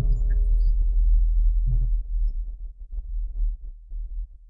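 Steady low electrical hum, with many soft rustles and light knocks of a congregation's clothes, knees and hands on the carpet as the worshippers go down into prostration, starting a little under two seconds in.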